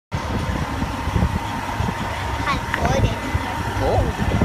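A semi truck's diesel engine idling with a steady low rumble and a faint steady whine above it. Brief distant voices come in about two and a half seconds in.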